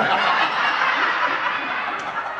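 A theatre audience laughing together, a dense wash of many voices that eases off slightly in the second half.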